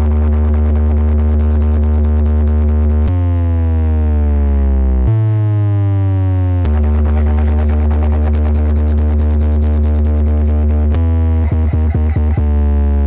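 Electronic bass music played loud through a large DJ sound system of stacked bass cabinets and horn speakers for a bass test: deep, steady bass notes, with a stretch of sliding pitch sweeps in the middle and a choppy stutter near the end.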